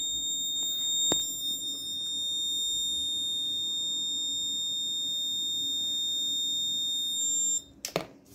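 Electronic alarm buzzer on a Raspberry Pi Pico health-monitoring board sounding one continuous high-pitched tone, the danger alarm raised here by a temperature alert. It cuts off suddenly shortly before the end. A single click comes about a second in.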